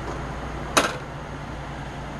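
One sharp click about three-quarters of a second in, as a small paint jar is set down on the work table, over a steady low background hum.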